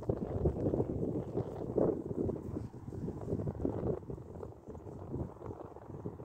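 Pony's hooves thudding on grass as it canters past close by, then fading as it moves away, with wind buffeting the phone's microphone.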